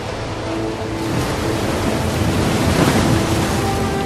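Ocean surf washing ashore, a dense steady rush that swells a little toward the middle, over low sustained music.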